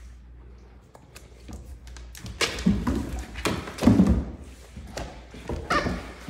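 Great Dane puppies play-fighting on a hardwood floor: irregular thuds, paw knocks and scrabbling that start about two seconds in and come loudest in two clusters.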